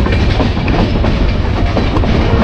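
Moving passenger train heard from inside a carriage at the window: steady loud rumble of the wheels on the rails with irregular clatter.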